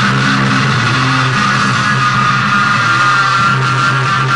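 Rock band playing live, led by heavily distorted electric guitar holding sustained chords that drone on steadily, with little drumming.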